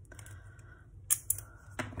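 Washi tape being pulled off its roll and torn by hand: a few short, crisp crackles about a second in and again near the end.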